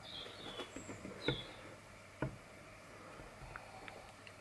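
Quiet room tone with a few soft, short clicks, the clearest about one and two seconds in, and faint high chirps near the start.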